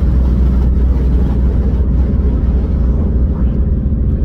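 Steady low rumble of a Jeep's engine and road noise heard inside the cabin while driving.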